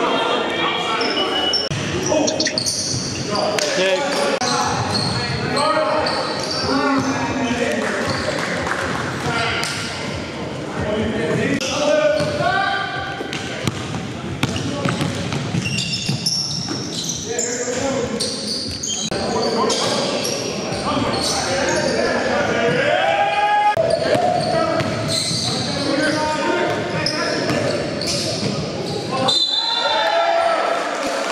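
Basketball game sound in a large gym: a ball bouncing on the hardwood floor, with players' voices calling out and echoing in the hall.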